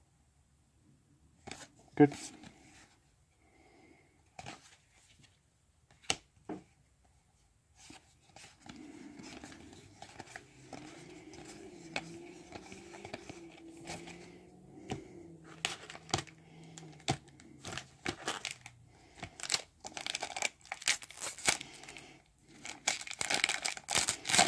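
Magic: The Gathering cards being flipped and slid off one another in short clicks and snaps, thickest in the second half. Near the end a foil booster-pack wrapper crinkles and tears as the next pack is picked up and opened.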